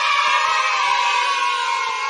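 A crowd-cheering sound effect: a sustained cheer from many voices at once that tapers off near the end.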